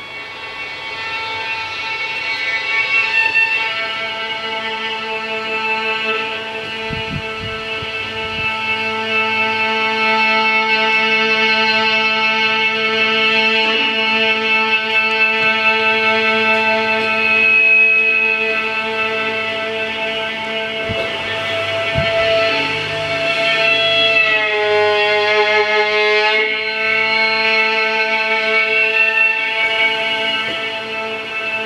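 Solo violin bowing long, sustained notes that imitate the hum of an oscillating fan, with a steady low hum underneath from about four seconds in. Near the end the pitch bends down and slides back up.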